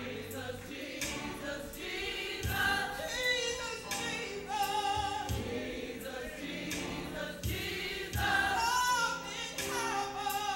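Gospel choir singing in a church, with low thumps of a beat falling in pairs about every two and a half seconds.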